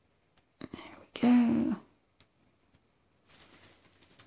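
A person's short breathy whisper, then a brief hummed "mm" held on one pitch about a second in, the loudest thing here. Near the end, a soft rustling hiss.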